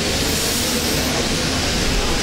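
Audience applauding: a steady wash of clapping that holds level through the pause in the talk.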